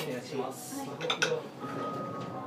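Tableware clinking: serving utensils knocking against plates and small bowls, a few sharp clinks, the clearest about a second in, with voices in the background.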